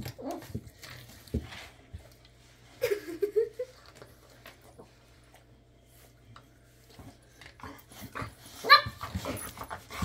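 Boxer puppy and adult boxer playing, giving short whines and grumbles, with a louder yelping cry near the end.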